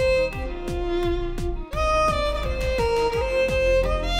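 Solo violin playing a sustained, bowed pop melody over a self-made GarageBand backing track with a steady electronic drum beat. The music breaks off for a split second about one and a half seconds in, then comes straight back.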